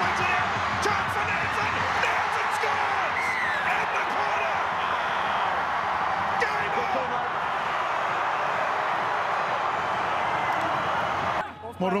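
Large crowd of supporters cheering and shouting, many voices at once and holding steady, celebrating a try. It cuts off abruptly near the end.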